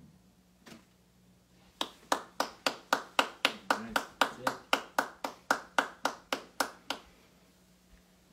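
A single person clapping, steady and evenly spaced at about four claps a second for some five seconds, starting about two seconds in.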